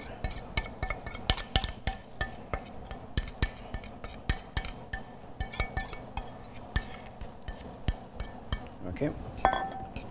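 A metal utensil repeatedly clinks and scrapes against a stainless steel mixing bowl as sliced peppers are scraped out into a pan of boiling vinegar pickling liquid. Then a utensil stirs in the pan, giving irregular light metallic clicks several times a second.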